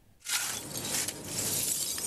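Shovel pushed into a heap of broken glass shards, a continuous crunching, clinking clatter of glass starting about a quarter second in.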